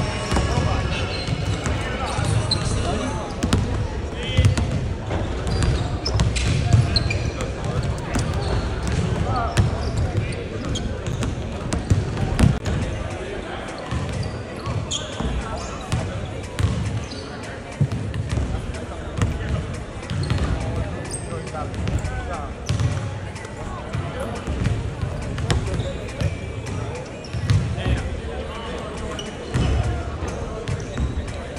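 Basketballs bouncing on a hardwood gym floor in irregular thumps, with people talking indistinctly in the background.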